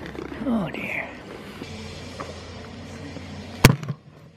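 A goat bleating once, briefly and falling in pitch, about half a second in, over a steady low hum. A sharp knock comes near the end.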